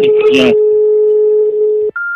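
A loud, steady electronic tone held almost two seconds, cutting off suddenly, with a burst of a man's speech over its start; a short, higher beep follows right at the end.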